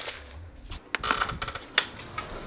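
Handling noise: a low rumble near the start, then a few sharp clicks and knocks, two of them standing out about a second in and near the end.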